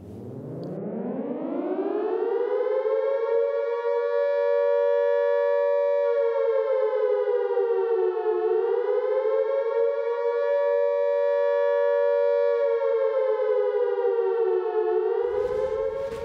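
Electric civil-defence siren sounding the air-raid alarm signal, the same signal used for the all-clear. It winds up in pitch over about three seconds to a steady wail, sags slightly in pitch and recovers about halfway through, sags again near the end, and stops.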